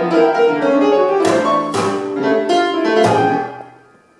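Free-improvised jazz: acoustic piano striking notes and clusters against double bass, with several sharp struck attacks. The playing thins out and dies away just before the end.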